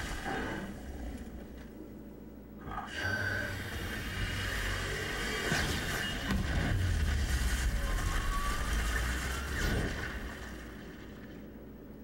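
Film trailer soundtrack: music and sound effects with a deep low rumble, swelling about three seconds in, with a faint rising tone in the middle, then fading near the end.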